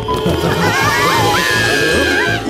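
Cartoon background music with the bunny characters' high, squeaky, wavering cries over it, ending in one long held cry.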